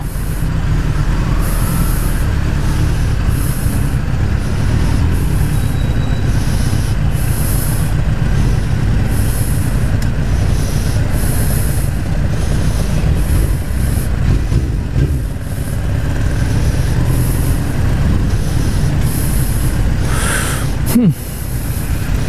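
Suzuki GSX-R 1000 K3 inline-four engine running steadily at low revs while creeping through stopped traffic. The engine is running hot, its gauge reading 86 degrees.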